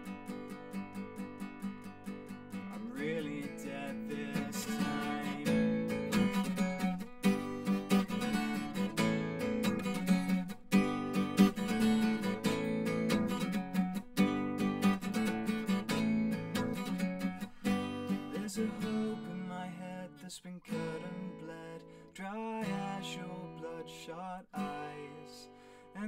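Acoustic guitar strummed in steady rhythm without vocals, starting light, growing fuller about three seconds in, then thinning to softer, broken-up strumming over the last several seconds.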